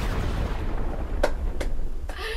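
A woman laughing breathily right into the microphone, the rush of air coming through as a loud, rumbling hiss, with two short sharp bursts over a second in.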